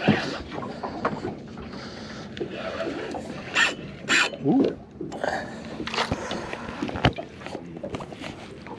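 Wind and water noise around a small open boat, with a few sharp knocks from handling gear about three and a half, four and seven seconds in, and a brief voice sound.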